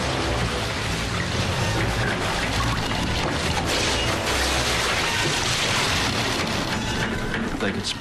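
Dramatic soundtrack of a dense, steady rushing noise over low sustained music tones, set against a wooden ship being crushed and breaking up in pack ice.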